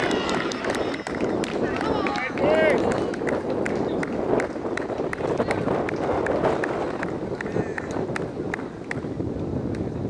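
Cricketers' voices calling and shouting across the field, with a few drawn-out calls in the first three seconds, over a steady noisy background with frequent short clicks.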